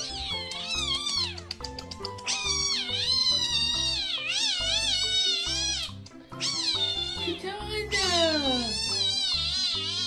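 A spotted cat giving a run of long, high, wavering cries, each several seconds long with short breaks between, while a bowl of wet food is held out to it. Background music plays underneath.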